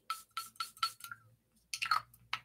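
Perfume atomizer on a bottle of Miss Dior Rose Essence being sprayed in quick short puffs: four brief hisses about a quarter second apart, then another spray near the end.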